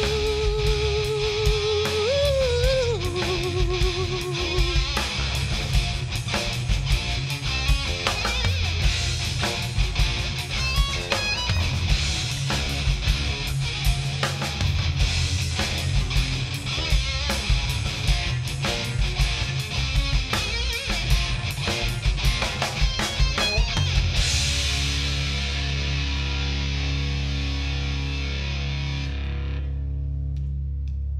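Hard rock band playing live with distorted electric guitars, bass and drums: a long held note with vibrato over the band at first, then driving drums and guitar. About 24 seconds in, the drums stop and the final chord rings out, its high end fading near the end as the song closes.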